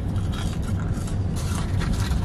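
Steady low rumble inside a car's cabin, with a few faint crackles of a man chewing french fries and handling a paper fry carton.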